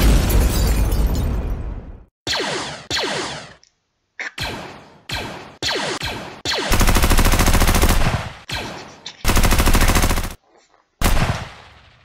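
Dubbed sci-fi battle sound effects: a big explosion at the start, then a string of blaster shots with falling-pitch zaps, and two longer bursts of rapid blaster fire.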